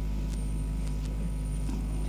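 Steady low electrical hum with a few faint clicks: the background noise of an old recording.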